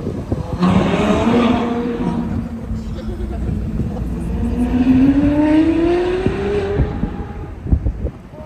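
A car engine running past: its pitch holds steady for a few seconds, then rises as it accelerates, and it fades away near the end.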